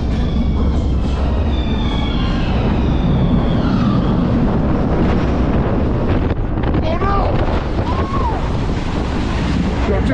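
Wind buffeting a GoPro's microphone as a steady low rumble, with faint voices behind it and two short rising-and-falling tones near the end.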